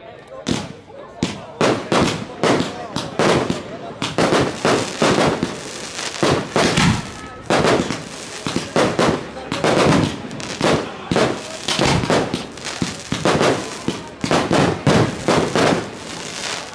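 Fireworks going off shot after shot, sharp bangs and crackles coming a few per second from about half a second in.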